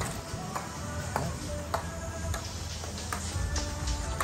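Background music: light, pitched, chime-like notes, about one every half second or so, over a low steady hum.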